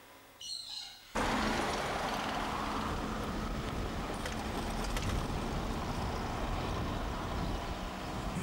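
A car driving along a street: an even rush of tyre and engine noise that starts abruptly about a second in and holds steady. Just before it there is a brief high chirp.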